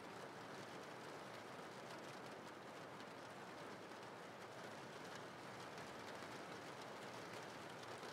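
Faint, steady rain: an even hiss with fine ticks of individual drops.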